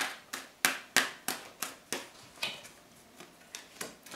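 Tarot cards handled and laid down on a wooden table: a sharp card snap about three times a second for the first two seconds, then a few softer taps.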